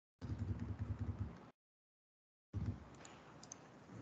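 Typing on a computer keyboard, picked up by a desk microphone, in two bursts of rapid clicking about a second apart. The sound cuts in and out abruptly with dead silence between.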